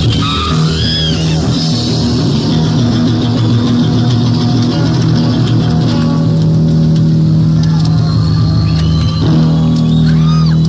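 Live hard rock from an audience recording: distorted electric guitars and bass with drums, the band holding sustained chords through the second half.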